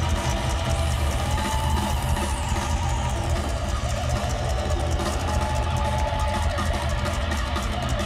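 Loud live rock music from a band with guitar and drums over heavy bass, heard from within a stadium crowd.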